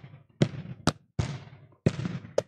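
Several balls bouncing on a hardwood gym floor and being struck back up with two hands: about four sharp, irregular thuds, each with a short echo.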